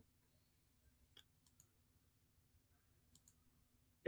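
Near silence broken by a few faint computer mouse clicks: a small cluster about a second in and two more a little after three seconds in.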